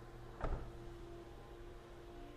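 A single short thump with a quick falling whoosh about half a second in, over a faint steady hum.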